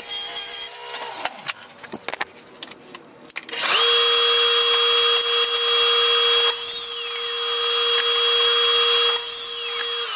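Sliding compound miter saw cutting an MDF board. Its motor spins up quickly about a third of the way in and runs with a steady whine. The sound grows rougher for a few seconds while the blade is in the board, and the motor starts winding down at the end. Before that, a saw motor winds down and boards knock as they are handled.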